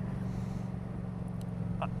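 2015 Yamaha MT-07's parallel-twin engine running steadily at cruising speed in fourth gear through an aftermarket Leo Vince exhaust.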